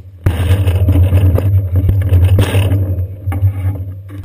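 Rumbling and rattling of a bicycle being moved, carried through its seat-post camera mount. It starts suddenly a moment in, stays busy with scrapes and knocks, and dies down near the end.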